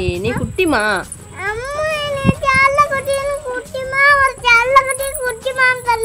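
A high voice holding one long wordless note for about four seconds, wavering slightly, after a few words at the start. A steady chirping of crickets runs underneath.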